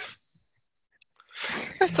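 A sharp burst of breath fading out at the start, about a second of silence, then a breathy exhale running into a man's speech near the end.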